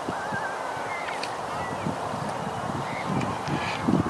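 Steady rushing outdoor noise, with a few faint wavering bird calls over it in the first half.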